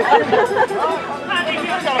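Speech only: men talking into handheld microphones, with a brief laugh about a second in.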